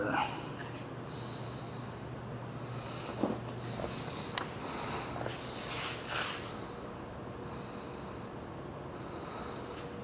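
Quiet room tone with a low steady hum, a few soft breaths through the nose close to the microphone, and a small click about four seconds in.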